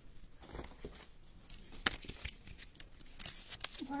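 Handling of a trading card and a clear plastic card holder as the card is fitted into it: faint scattered clicks and rustling, with one sharper click just under two seconds in.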